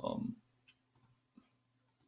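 A few faint computer mouse clicks, less than half a second apart.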